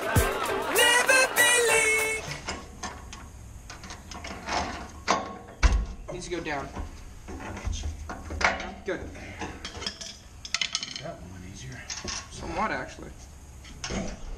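About two seconds of music and voices, then hand tools working steel suspension hardware under a truck: scattered metal clicks and clinks, with one sharp knock about six seconds in.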